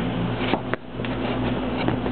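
Steady low hum and even whir of running electrical equipment, with a few faint clicks.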